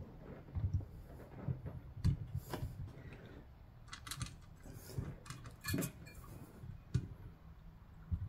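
Scattered light metallic clicks and taps of a Noctua NH-U12S DX-3647 cooler's steel mounting bracket knocking against the LGA 3647 socket's threaded rods as it is fitted, not yet seating.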